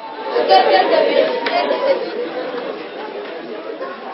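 Several people talking at once, overlapping voices of a gathered group, louder in the first half and easing off toward the end.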